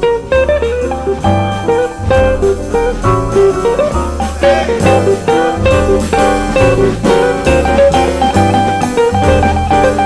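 Live jazz: a hollow-body archtop guitar plays the lead line over a walking upright bass and drum kit. The bass moves in even steps about every half second beneath it.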